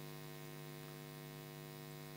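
Steady electrical mains hum with a buzz of many evenly spaced overtones, the constant background noise of the voice-over recording.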